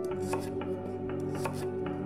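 Chef's knife slicing celery stalks into batons on a wooden cutting board: several separate cuts, each ending in a short knock of the blade on the board. Music plays underneath.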